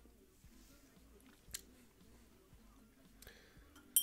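Mostly quiet room with a faint click about one and a half seconds in; at the very end a tasting glass clinks sharply and rings briefly at a high pitch.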